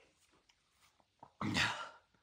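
Near silence with a few faint clicks, then about one and a half seconds in a man says a single short 'okay'.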